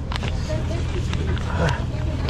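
Steady low motor hum, with faint voices in the background.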